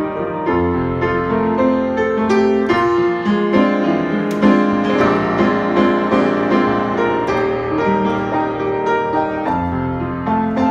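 Hallet, Davis & Co UP121S studio upright piano, just tuned, played without pause: full chords and melody over both bass and treble with many quick note attacks.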